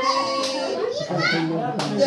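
Chatter of a crowd of women and children, several voices talking at once in a steady babble, with one sharp click near the end.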